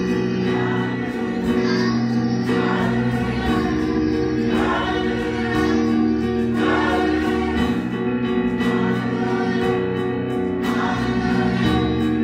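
A group of voices singing a gospel song, with instruments playing along.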